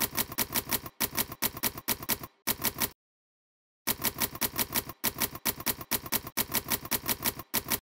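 Manual typewriter keys striking in quick runs of clicks, word by word, with a pause of about a second midway. The clicks stop just before the end.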